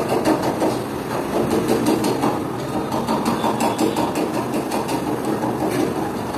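Busy eatery background: a steady, dense rumble of noise with many sharp clicks and knocks repeating throughout, like metal clatter.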